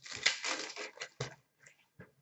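Trading cards rustling and sliding against each other as a stack is handled, with a sharp click a little after a second in, then a few faint ticks.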